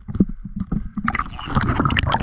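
Knocks and clatter of the camera being handled against a boat's hull, then from about a second in a louder wash of splashing water as the camera goes under the surface.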